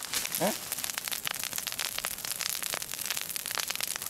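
A peatland brush fire crackling and popping, with dense, irregular snaps that go on without pause.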